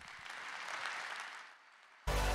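Audience applauding in response to the introduction of two guests, building briefly and then fading away near the end.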